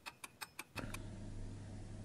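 A fast run of short, sharp metallic ticks, about eight a second, that stops within the first second: a ticking sound effect laid under a title card. After it comes quiet room tone with a low steady hum.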